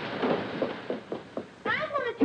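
A hissing noise with a few knocks and clatters as a metal pot is tipped and handled on a stove top. About three-quarters of the way in, a drawn-out vocal wail starts, wavering widely up and down in pitch.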